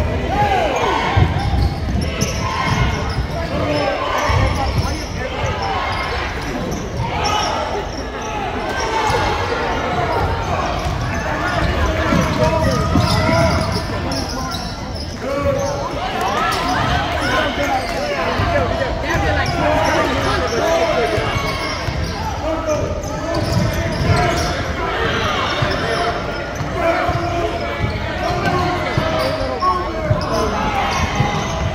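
A basketball game in a school gym: a ball being dribbled on the hardwood floor, with frequent short sneaker squeaks and constant spectator chatter.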